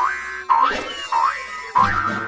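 Cartoon sound effect: four short springy boing tones about half a second apart, each sliding quickly up in pitch.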